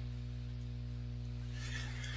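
Steady low electrical hum with several even overtones and a faint background hiss in the recording.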